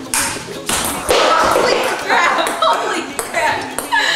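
Table tennis ball clicking sharply off paddles and the table, a few separate hits, with voices and laughter over them.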